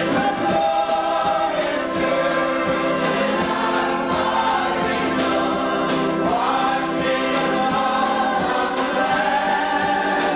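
A choir singing together in several parts, holding long notes without a pause.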